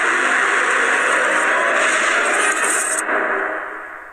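A YouTube channel's intro sound playing: a loud, dense, noisy sound whose highest part cuts off about three seconds in, and which then fades away.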